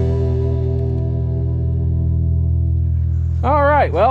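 Background rock music: a held electric guitar chord with effects slowly fading, then a short wavering, bending note near the end.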